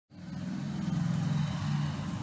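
A motor engine running with a low, steady hum that shifts slightly in pitch.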